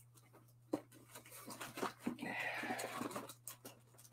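Faint rustling with light knocks and ticks of hands rummaging in a cardboard shipping box. A soft, breathy hiss runs through the middle for about a second.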